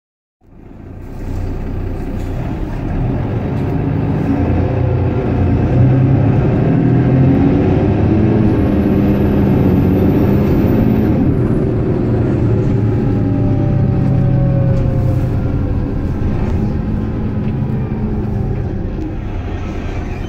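Mercedes-Benz Citaro single-deck bus heard from inside the passenger saloon: its engine and drivetrain run steadily, the engine note shifting up and down. A whine falls slowly in pitch about two-thirds of the way through.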